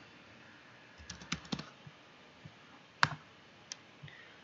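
Computer keyboard keys being tapped: a quick run of about five clicks a second in, then a single sharper click about three seconds in and a fainter one near the end.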